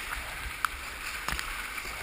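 Rushing whitewater of a river rapid around a kayak, a steady hiss, broken by a few short sharp knocks about a third of the way in and just past halfway.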